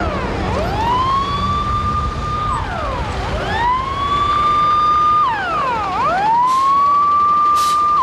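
Fire engine siren wailing in repeated cycles: each one rises quickly to a high note, holds it for about two seconds, then drops, three times over. A second siren overlaps out of step, over a steady low rumble.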